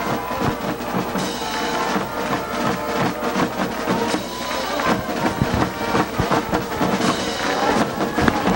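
School band in the stands playing a tune with drums and held instrument notes, the usual band music after a touchdown.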